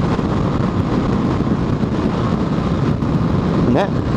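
Yamaha Factor 150 single-cylinder four-stroke motorcycle engine running steadily while riding, mixed with wind and road noise.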